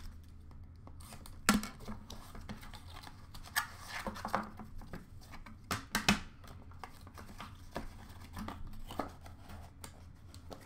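Hands handling a black box with a foam insert and a plastic graded-card slab: a few sharp clacks, the loudest about a second and a half in and a pair around six seconds, with rustling and scraping between.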